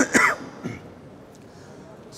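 A man coughing to clear his throat: two short, loud coughs in quick succession into his fist at the very start.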